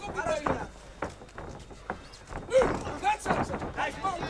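Shouting from ringside during a kickboxing bout: short calls that rise and fall in pitch, about half a second in and again near three seconds, over a steady arena background, with a few sharp knocks.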